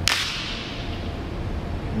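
A whip-crack sound effect, of the kind edited in over a jump cut: one sharp crack followed by a hiss that fades away over about a second and a half.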